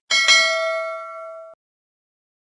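Notification-bell ding sound effect: a bright chime struck twice in quick succession, ringing down and cut off abruptly about a second and a half in.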